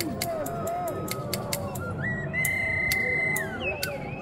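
Scissors snipped open and shut in an irregular run of sharp clicks, over a small toy whistle playing short notes that bend up and down. Halfway through, the whistle holds a higher warbling note for about a second.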